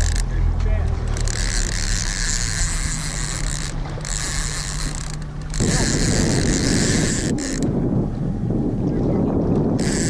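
A fishing reel being cranked in spells to bring a hooked king mackerel to the boat: a gear whirr that stops and starts several times, over a low steady rumble.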